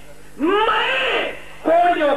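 A man's voice through a PA microphone, holding one long drawn-out exclamation for about a second that rises and then falls in pitch, followed near the end by the start of loud speech.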